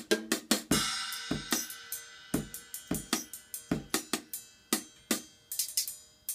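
Portable Red Dragon drum set played with sticks: a steady run of strokes on small toms and snare mixed with hits on small cymbals and hi-hat, the cymbals ringing on between strokes from about a second in.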